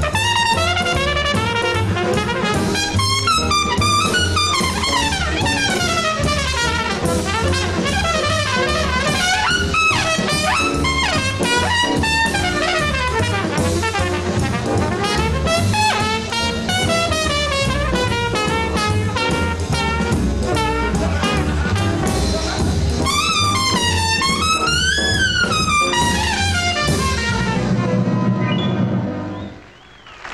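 A 1950s small-group jazz recording with a trumpet soloing in fast, gliding runs over bass and drums. The music drops away near the end when playback stops.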